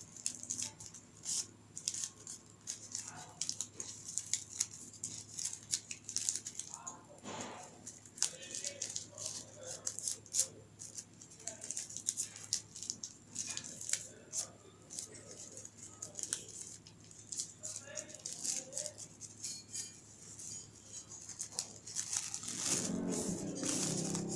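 Thin red paper crinkling and rustling in the hands as it is folded into small pleats, with many quick, irregular crackles.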